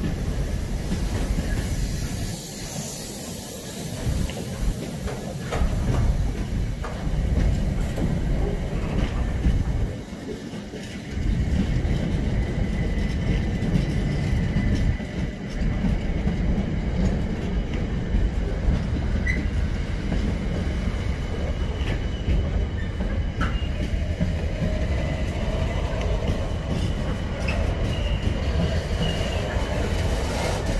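Container wagons of a long freight train rolling past close by: a continuous heavy rumble with wheel clatter over the rails and a faint high wheel squeal at times. The rumble dips briefly twice.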